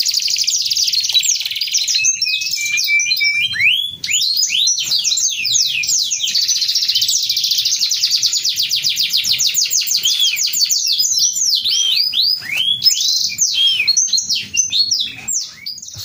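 Domestic canary singing a long, loud song of very fast trills and swooping arched notes, with hardly a pause.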